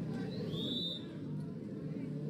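Low background of a sports broadcast: crowd and distant voices murmuring. One short high whistle sounds about half a second in.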